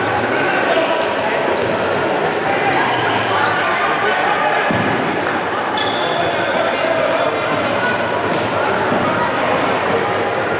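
Indoor futsal play in an echoing sports hall: players' and coaches' voices calling out, with the ball being kicked and thudding and shoes squeaking on the wooden court.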